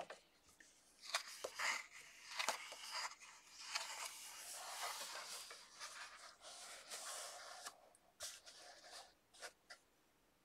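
Paper pages of a coloring book being turned and smoothed flat by hand: soft rustling and brushing of paper, with a few short clicks near the end.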